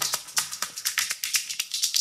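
An electronic dance track played through a DJ mixer's filter turned nearly fully right: the bass and mids are cut away, leaving only thin, rapid high-pitched ticks of the hi-hat and shaker percussion.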